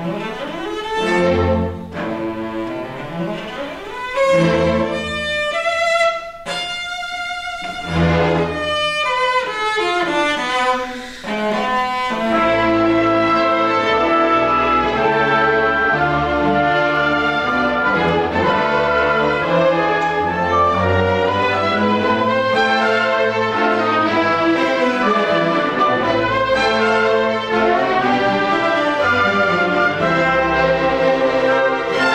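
Symphony orchestra playing, with a solo cello among the strings. About the first twelve seconds come in short swelling phrases with brief lulls; after that the orchestra plays on continuously at full level.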